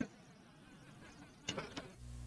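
A pause in a man's spoken narration: faint steady background hiss, with a brief soft mouth sound near the end.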